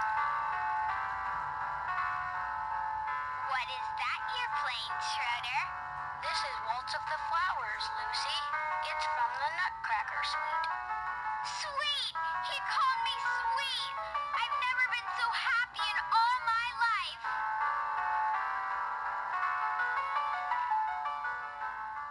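Hallmark Keepsake Peanuts ornament of Lucy and Schroeder playing its built-in sound clip through a small speaker: music at the start, voices over it from about three seconds in to about seventeen seconds in, then music alone again.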